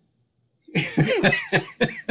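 After a brief dead silence, a man breaks into laughter that comes in short pulsed bursts.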